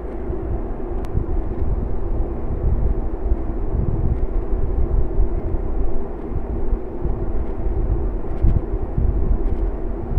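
Steady low rumbling background noise with a faint steady hum, with no distinct events.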